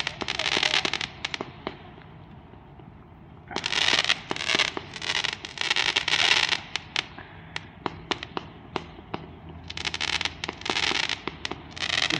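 Aerial fireworks going off overhead: three spells of rapid, dense popping, near the start, from about three and a half to six and a half seconds, and around ten seconds, with scattered single bangs in between.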